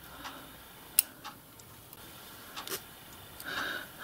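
Tweezers clicking and scraping against the inside of a small metal whistle push-valve body as the push rod is drawn out. There are a few light, scattered clicks, the sharpest about a second in.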